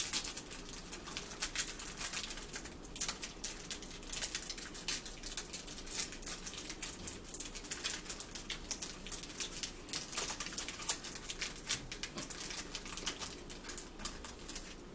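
Plastic wrapper crinkling and crackling as it is worked open by hand, with close chewing and fork-on-plate sounds. Many quick clicks run throughout with no steady beat.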